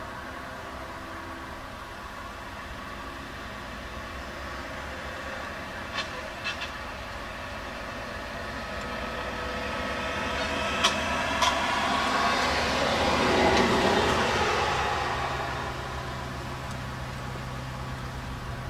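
A vehicle passing by: a steady hum that grows louder to a peak about three-quarters of the way through, then fades. A few sharp clicks come before the peak.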